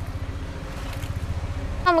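A low, steady engine rumble of a motor vehicle running, with a fast even pulse, swelling slightly in the middle.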